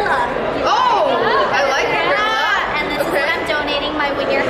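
Several people talking over one another in lively, unclear chatter, the voices swooping widely up and down in pitch.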